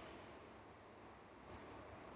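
Near silence: faint room tone with a single soft click about one and a half seconds in.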